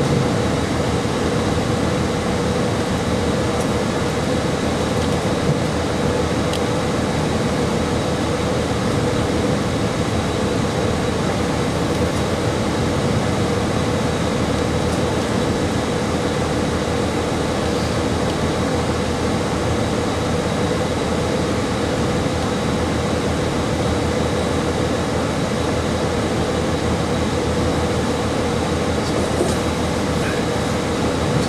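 KiHa 40-series diesel railcar idling at a station stop, heard inside the cabin: a steady engine drone with a constant hum, unchanging throughout.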